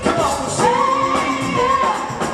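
Live funk and soul band playing, with a singer holding one long note over the band for about a second and a half.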